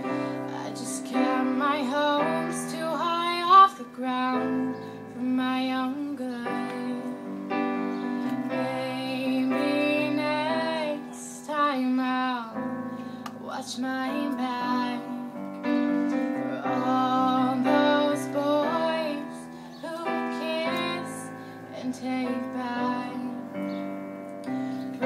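A woman singing over piano chords played on a digital keyboard, performed live. One short, loud thump stands out about three and a half seconds in.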